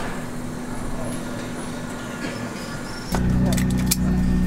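Airport-lounge background of faint voices and a steady hum, cut off about three seconds in by the loud, steady low drone of an airliner cabin on the ground, with a few sharp clicks.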